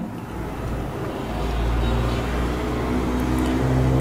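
A low, steady engine-like rumble, as of a motor vehicle running nearby, growing louder about a second in and holding.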